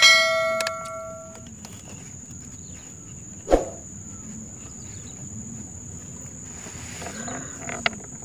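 A bell-like ding chimes at the start and rings out over about a second and a half, the notification-bell effect of a subscribe-button animation. After it a faint steady high insect whine goes on, with a single knock about three and a half seconds in.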